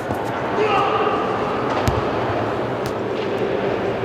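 Voices in a large indoor hall, with one heavy, dull thud about two seconds in, as of a shot-put shot landing on the floor.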